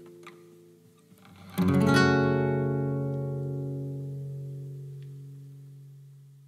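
Closing guitar chord: the last notes die away, then a chord is strummed about one and a half seconds in and left to ring, fading slowly.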